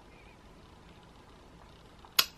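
Near silence: faint, steady room tone with a low hiss.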